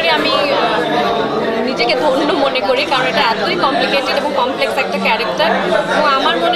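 Speech: a woman talking to reporters, with the chatter of other people around her.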